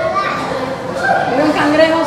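Young children's voices talking and calling out, with one long, high, drawn-out call in the second half.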